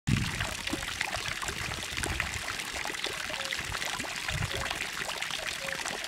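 Small garden-pond fountain jet splashing back into the pond: a steady trickle and patter of water drops landing on the surface.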